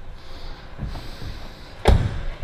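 The driver's door of a 2006 Mercedes-Benz ML320 CDI swung shut, one solid thud near the end.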